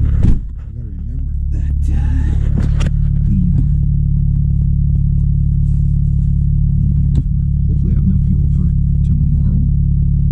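Car engine running steadily, a low hum heard from inside the cabin. There is a short bump just after the start, then the hum dips and builds back up over about a second.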